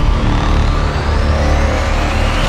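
Cinematic transition sound effect: a deep, steady rumbling drone with thin whines rising steadily in pitch over it, building up like a riser.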